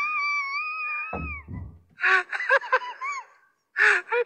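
A person laughing in a high, drawn-out squeal that wavers in pitch for about a second and a half, then breaks into short separate bursts of laughter, with a brief pause near the end before it starts again.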